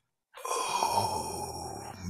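A man's long, breathy groan beginning about a third of a second in and slowly fading, a drawn-out vocal exhale in reaction to an awkward question.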